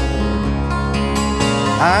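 Instrumental folk accompaniment on plucked strings, held between sung lines of a ballad. Near the end a man's singing voice comes in with an upward glide into the next line.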